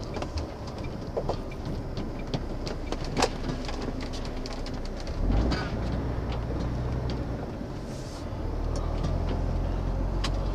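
Cab of a MAN TGX lorry: the diesel engine running at low speed as the truck creeps forward, with scattered small clicks and rattles. The engine note swells briefly about five seconds in and runs fuller from about eight seconds on.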